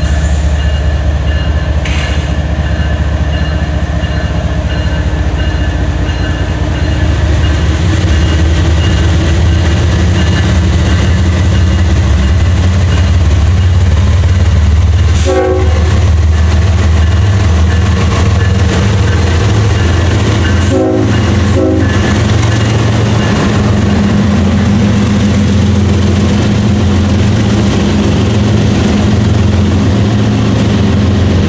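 CSX freight led by GE ET44AH and ES40DC diesel-electric locomotives, pulling away from a stop and passing close by. The diesel engines rumble loudly, and the rumble grows louder about eight seconds in as the lead units come alongside, with a few brief knocks from the train.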